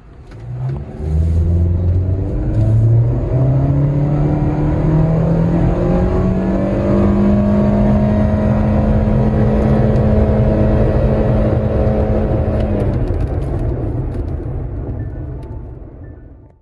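Honda Civic X's 1.8-litre four-cylinder engine under hard acceleration in a 0–100 run, heard from inside the cabin. The engine note climbs over the first few seconds, then holds at a nearly steady pitch as the speed builds, and drops away about 13 seconds in, fading out.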